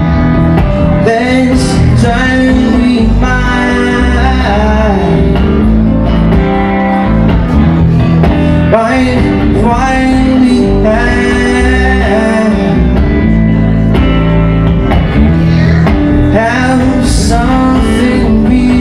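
Live electric guitar, a Stratocaster-style solid-body played through an amplifier, with a man singing over it at the microphone.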